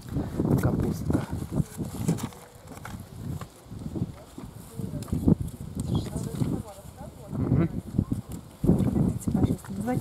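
Indistinct, low speech mixed with gusty outdoor noise.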